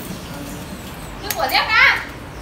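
A child's high-pitched voice calls out loudly near the end, over low background noise. Two sharp clicks come just before it.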